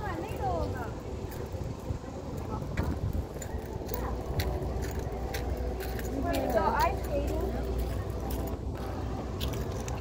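Downtown outdoor ambience: a steady low rumble with voices heard briefly twice, just after the start and again about six to seven seconds in, plus scattered faint clicks.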